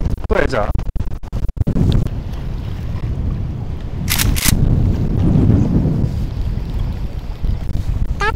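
Strong wind buffeting the microphone on an open fishing boat: a deep, gusty rumble that cuts in and out during the first two seconds. Two brief sharp sounds come about four seconds in.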